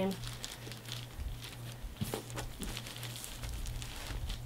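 Hands scrunching a damp cotton hoodie on a plastic drop cloth: scattered soft crinkling and rustling of the plastic sheet and fabric, with a sharper crackle about halfway through, over a low steady hum.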